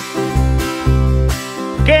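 Tiple and bass guitar playing a short strummed instrumental interlude, the bass sounding a steady run of low notes under the chords. A man's singing voice comes in near the end.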